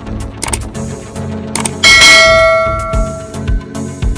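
A click, then a bell chime rings out about halfway through and fades over about a second and a half: a subscribe-button animation sound effect. It plays over background electronic music with a steady beat.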